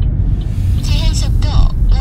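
Steady low road and engine rumble inside a moving Chevrolet's cabin, with a voice speaking briefly about a second in.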